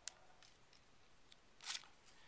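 Faint handling of a plastic Easter egg while modeling clay is packed into it: a small click right at the start, a few faint ticks, and a short scuffing sound near the end.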